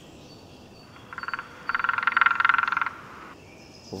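An animal's rapid pulsed trilling call, a short burst about a second in and a longer one right after it.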